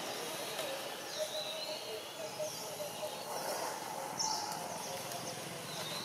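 Outdoor forest ambience: birds chirping now and then in short, high, quick pitch sweeps, over a faint murmur of voices.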